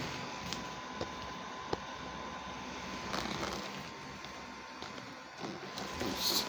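Faint handling noise from a handheld tablet being moved around, with a few soft clicks and a thin steady high tone running underneath.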